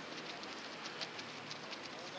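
A steady outdoor hiss with faint, irregular ticks scattered through it.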